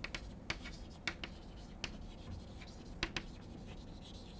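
Chalk writing on a blackboard: faint, irregular sharp taps and short scrapes as the letters are written, about half a dozen strokes.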